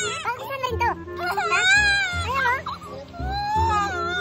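A young girl crying hard: long, high-pitched wailing cries that rise and fall, coming in several drawn-out bouts.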